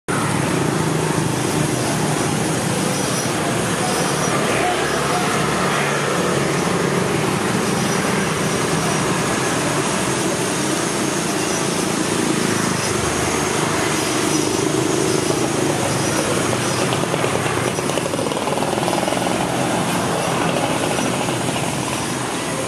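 Street traffic noise dominated by motor scooters running past, a steady, unbroken wash of engine and road noise.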